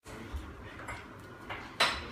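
Dishes and cutlery clattering during dinner preparation, a few light knocks and then one sharp clink near the end.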